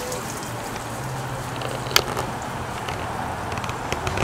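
Garden hose left running on the ground, water pouring out in a steady hiss, with one short click about two seconds in.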